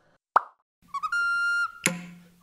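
A single short pop sound effect about a third of a second in, then an outro jingle starts about a second in: held high notes over a steady bass note, with a sharp click near the end.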